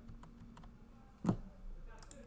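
A few light computer keyboard key clicks, the loudest about a second and a quarter in, over a faint low hum.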